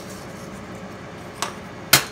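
Two sharp knocks of hard kitchen items being handled, a faint one and then a loud one near the end, over low room noise.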